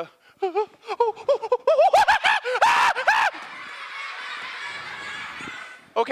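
High-pitched laughter, a quick run of rising-and-falling "ha" notes growing louder for about three seconds, then a steady hubbub from the audience until the end.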